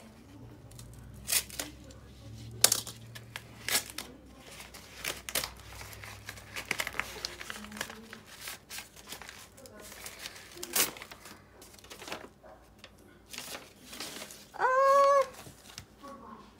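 Mail packaging being torn open and handled: paper and plastic tearing and crinkling in short, irregular rustles. A short vocal sound comes near the end.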